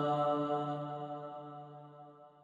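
The last held note of a man's chanted Arabic supplication dying away in a long echo: one steady pitch that fades out over about two seconds.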